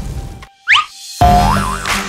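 Cartoon-style sound effects over children's background music: a quick rising whistle, then a wobbling boing tone as the music comes in about halfway through.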